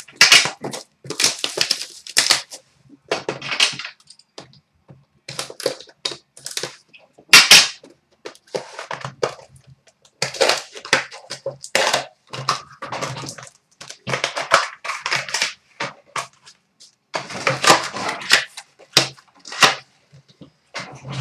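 Plastic shrink wrap and packaging crinkling and tearing as a hobby box of hockey cards is unwrapped and opened, with cardboard being handled, in irregular bursts; one sharp rip about halfway through is the loudest.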